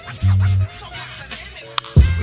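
Hip hop beat with turntable scratching: a deep bass note early on, quick scratched pitch glides, and a sharp hit near the end.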